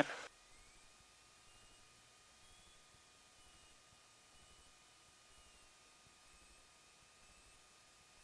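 Near silence, with only a few faint, thin, steady tones; one rises slightly early on.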